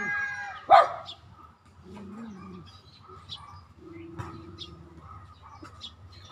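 A dog barking once loudly under a second in, followed by quieter drawn-out whining calls.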